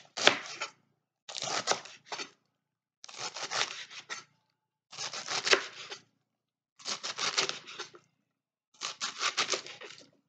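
A knife chopping crisp romaine lettuce on a plastic cutting board: six runs of quick crunching cuts, each about a second long, with short silent pauses between them.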